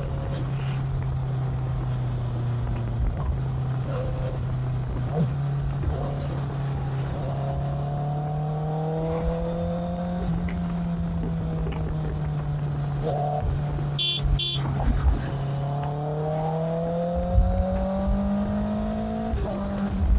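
Sport motorcycle's engine running under way, its pitch climbing slowly as it pulls, twice rising higher and then dropping back, over steady road and wind noise. Two short high beeps sound close together about two-thirds of the way through.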